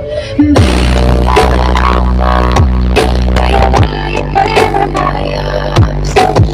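Electronic dance music played very loud through a huge truck-mounted speaker stack, the heavy bass kicking in about half a second in, with repeated falling bass sweeps.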